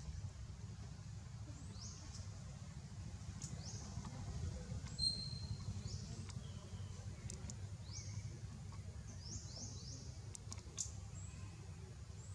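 Faint chirps from small birds: short, high calls sliding upward, spaced out at first and then several close together near the end, over a steady low rumble.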